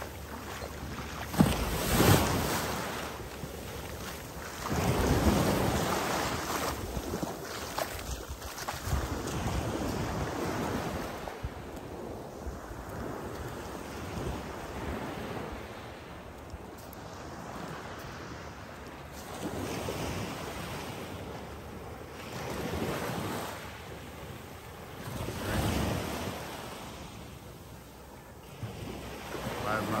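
Surf washing onto the beach in slow surges every few seconds, with wind buffeting the microphone. A sudden loud burst about two seconds in is the loudest moment.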